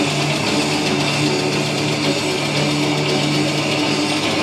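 Death metal band playing live: heavily distorted electric guitars hold one steady low note under a dense, noisy wash of sound.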